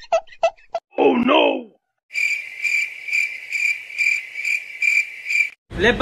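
Cricket chirping sound effect: a steady, high, pulsing chirp at about two chirps a second that starts about two seconds in and cuts off abruptly shortly before the end. It is preceded by a short 'Oh no!' exclamation about a second in.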